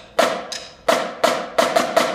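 A school percussion ensemble playing sharp unison strokes in a quickening rhythm, about seven hits in two seconds, each ringing briefly in the hall.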